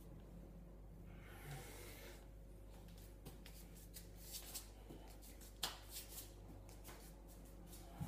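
Bare hands and feet patting and slapping softly on a tiled floor during a hands-and-feet crawl, in scattered taps that grow more frequent after a few seconds, with a breathy hiss about a second in. A low steady hum runs underneath.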